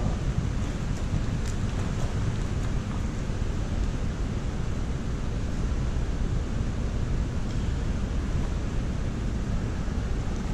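Steady low rumbling room noise of a large indoor pool hall, even throughout with no distinct events.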